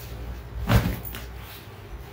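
A folded Kanchipuram silk saree flicked open and laid out on the floor: one soft whoosh and thump about three quarters of a second in, then a faint tap.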